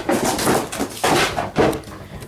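Handling noise: several loud rustling and scraping bursts as packaging is moved and the camera is picked up and carried.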